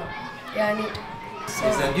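Boys' voices talking, in short bits of speech, with another voice starting to speak near the end.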